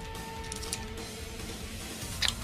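Quiet background music with a guitar. About half a second in, a few faint crinkles from a foil card booster pack being handled.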